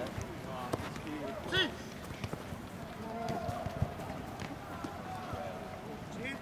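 Football players on an artificial-turf pitch: one shouts "Sì!" about a second and a half in, amid running footsteps and scattered sharp knocks of the ball being kicked, the loudest a little before four seconds in.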